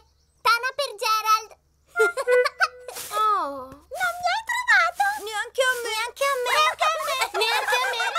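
Cartoon children's voices speaking in short, lively phrases, with two brief silent pauses: one at the very start and one just under two seconds in.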